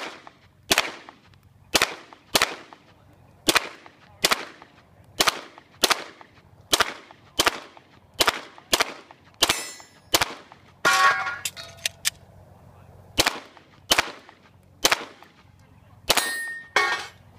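Heckler & Koch VP9 9 mm pistol firing a rapid string of about eighteen shots, mostly half a second to a second apart. The string pauses for about two seconds after about eleven seconds in, then picks up again.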